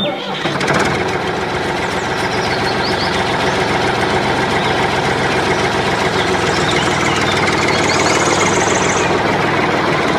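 Tractor engine sound starting abruptly and running steadily at an even speed, with a few faint bird chirps over it.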